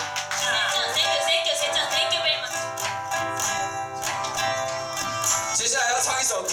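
A small live acoustic band playing the intro of a song: acoustic guitar with wind instruments such as melodica and horn.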